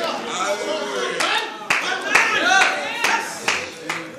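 Church congregation clapping in scattered, irregular claps, with voices calling out over them.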